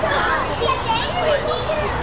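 Many voices talking and calling out at once, children's voices among them. It is a steady crowd babble in which no single speaker stands out.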